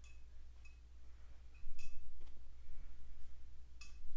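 A few light clicks, about two seconds apart, as a small hand weight is tapped down beside the mat during twisting sit-ups, over a steady low hum.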